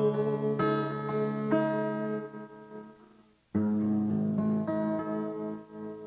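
Steel-string acoustic guitar playing a song's closing phrases: a few picked notes that ring and fade almost to silence, then a strummed chord about three and a half seconds in and one more note, left to ring out and die away.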